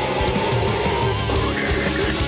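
A doom/death metal track playing as a band's own rough reference mix, with heavy electric guitars and a long held melody note above them.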